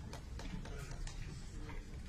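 Faint murmur of voices in a large room, with scattered light clicks and ticks.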